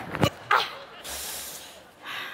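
A short vocal exclamation, "à", comes just after two quick clicks. A brief hiss follows.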